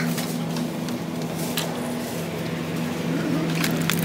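Steady low hum of a supermarket's refrigerated display cabinets over general store background noise, with a few faint clicks as plastic food packs are handled.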